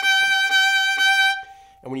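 Fiddle bowing the same high G (second finger on the E string) over and over, the bow changing direction down, up, down, up. The note holds one steady pitch and stops about one and a half seconds in.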